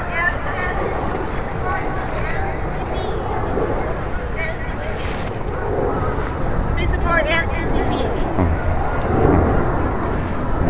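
Crowd chatter: many people talking over one another as a large crowd walks along a street, with no single clear voice standing out.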